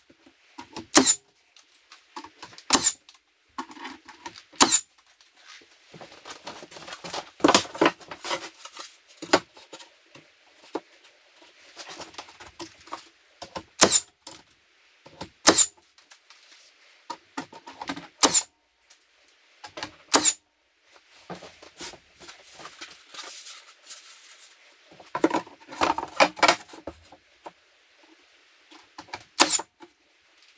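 Cordless battery-powered nailer firing about ten sharp shots, a second or more apart, driving nails through wooden siding boards. Between the shots come scraping and knocking as the boards are handled and pushed into place.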